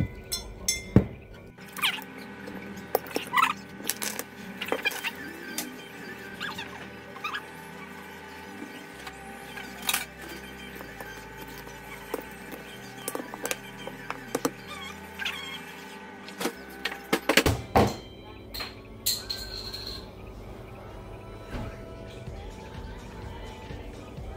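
Repeated metal clicks and scrapes of a key being used to pry the crown cap off a glass beer bottle, with a cluster of louder knocks about three quarters of the way through. Background music plays throughout.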